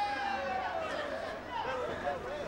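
Players' voices shouting and calling to each other across an open football pitch, heard at a distance over the ground's open-air background noise.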